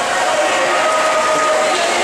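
Reverberant indoor swimming-pool din: voices of spectators cheering and shouting over the splashing of swimmers, with one voice holding a long call around the middle.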